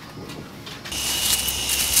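Quiet room tone, then about a second in a steady hiss with a thin high whine starts, typical of a small quadcopter drone hovering overhead.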